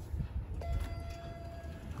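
A 1973 Dover hydraulic elevator arriving: a steady low rumble, with a steady tone coming in about half a second in and holding for over a second, just before the doors open.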